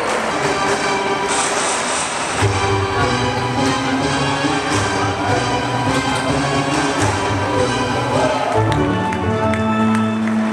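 Background music laid over the game footage, with sustained notes and a bass line that comes in about two and a half seconds in.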